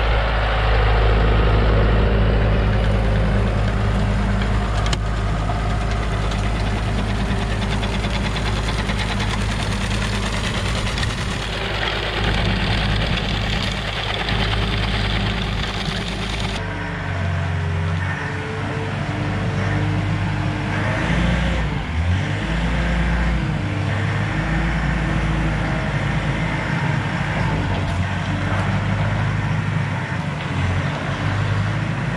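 John Deere tractor's diesel engine running steadily while it pulls a manure spreader, loudest in the first seconds. Partway through, the sound changes suddenly to diesel machinery whose engine pitch rises and falls.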